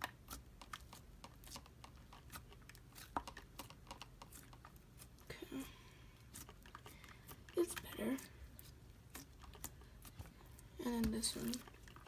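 Homemade slime being kneaded and stretched by hand, giving a string of small, irregular sticky clicks and pops.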